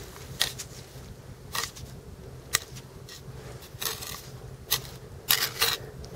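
Several short, sharp clicks and scrapes of stones being handled and knocked together by hand, spread out with gaps between them, over a faint steady low hum.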